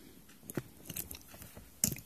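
A few faint, short clicks and scrapes of a metal loom pick against the metal pegs of a wooden Kiss knitting loom as stitches are lifted and moved, the loudest click near the end.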